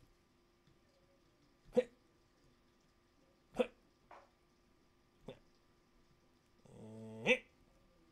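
Quiet soldering work on a small circuit board: a few short, sharp clicks spaced a second or two apart, and a brief low hummed "mm" near the end.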